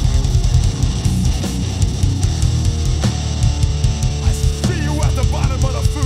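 Metalcore band playing live: heavily distorted, low-tuned electric guitars and bass over drums. About four and a half seconds in, a higher wavering line comes in over the band.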